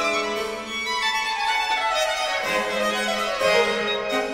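Baroque chamber ensemble of two violins, viola da gamba, harpsichord and cello playing the Allegro second movement of a quadro sonata in G minor, with the violins leading. One line falls steadily over the first two seconds or so, and lower held notes come in about halfway through.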